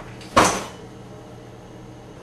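A single sharp knock about half a second in, with a short ring after it, like a cupboard door shutting.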